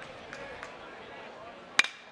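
A baseball bat striking a pitched ball for a line drive: one sharp hit near the end, over a low, steady ballpark crowd murmur.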